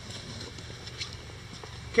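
A steady low hum of room tone with a few faint taps, the footsteps of someone walking on a concrete floor.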